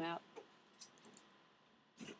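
A few faint, short clicks at a computer as a menu item is selected.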